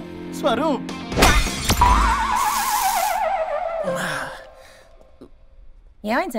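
Comedy sound effects over film music: two sharp hits a second in, a crash like breaking glass, and a long wavering cry that falls in pitch and fades out after about four seconds.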